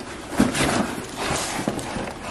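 Cardboard packaging being handled: rustling and scraping with a few light knocks as a boxed item is lifted out of a cardboard shipping box.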